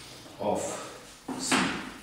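Chalk writing on a blackboard: short scratchy chalk strokes, the sharpest about a second and a half in.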